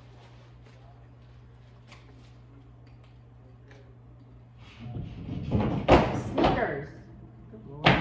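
Quiet, steady low hum, then about five seconds in two seconds of clattering and thuds, followed near the end by one sharp knock.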